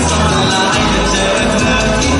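Loud live band music with a male singer singing into a microphone over a steady bass line.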